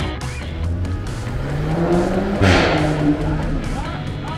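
Car engine revving up, its pitch rising steadily, then a short loud rush of noise about two and a half seconds in before it holds a steady note. Background music plays underneath.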